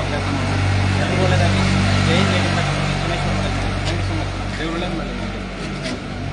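Ambulance van's engine idling with a steady low hum, loudest in the first half, with people's voices around it.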